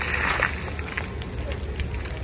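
Splash-pad water jets spraying and spattering onto wet concrete, a steady hiss with a louder rush of spray in the first half-second.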